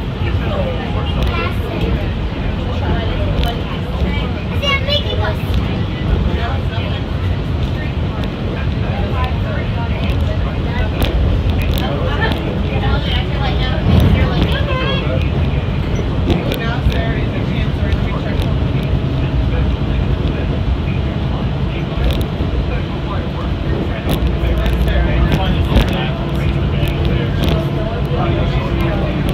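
Cabin noise of a moving Walt Disney World Mark VI monorail: a steady low rumble from the running train, with indistinct passenger chatter over it.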